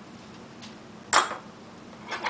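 A single sharp clink of glass and metal kitchenware, a small glass dish or spoon knocked on the counter, about halfway through. The rest is quiet room tone.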